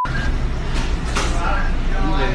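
A car's engine running with a steady low hum, with people's voices over it.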